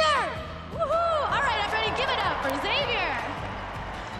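A child's shouted cheer trailing off, then several excited rising-and-falling vocal whoops, with music playing underneath.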